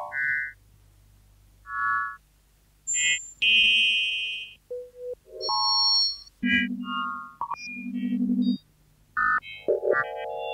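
Early electronic music: short electronically generated tones of differing pitches, each a second or less, set apart by brief silences. In the middle a low tone pulses rapidly for about two seconds, and a flurry of short high blips comes near the end.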